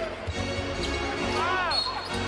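Live basketball game sound: the ball being dribbled on the hardwood court over steady crowd noise and arena music. About one and a half seconds in come short sneaker squeaks.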